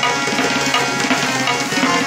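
Tabla pair played fast with bare hands: a rapid run of strokes on the ringing treble drum (dayan) over deeper strokes on the bass drum (bayan).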